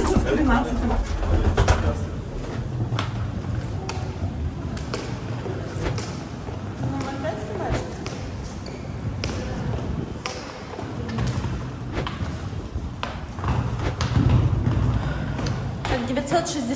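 Footsteps and a wheeled suitcase rolling across a stone floor, with scattered clicks and knocks and a low rumble throughout. Indistinct voices can be heard in the background.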